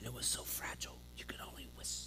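A man whispering a few short, breathy phrases, with a faint steady electrical hum beneath.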